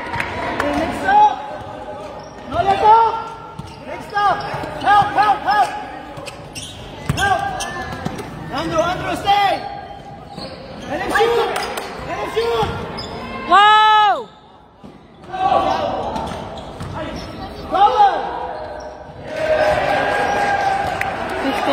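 Basketball sneakers squeaking again and again on a hardwood gym floor as players cut and run, with the ball bouncing. The loudest, longest squeak comes about two-thirds of the way through.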